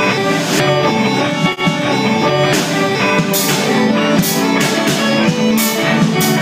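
Live rock band playing with electric guitars and drums. The cymbals drop out about half a second in, there is a brief break about a second and a half in, and the full band comes back with cymbal hits.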